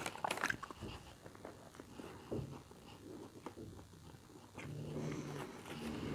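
Faint close-up chewing of a soft burrito, with small wet mouth clicks in the first moments. A low, steady hum through closed lips lasts about a second near the end.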